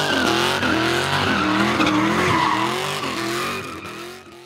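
Car doing donuts: tyres squealing steadily over an engine revving up and down in quick pulses, fading out near the end.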